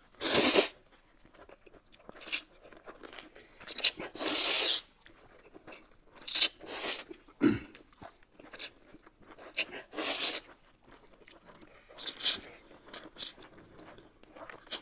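Noodles being slurped and chewed close to the microphone, in short loud noisy bursts every second or two.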